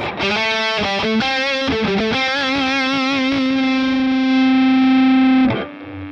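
Distorted electric guitar lead through a Boss Katana 100 MkII amp: a quick run of notes, then one long held note with vibrato that sustains for about three seconds and cuts off near the end.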